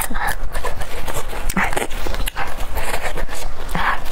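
Close-miked wet chewing of raw garlic, with many small mouth clicks. Four short, breathy bursts of air come through the chewing, near the start, about a second and a half in, about three seconds in and near the end.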